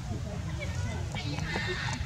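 A macaque's short, high, raspy squeal in the second half, over people talking in the background.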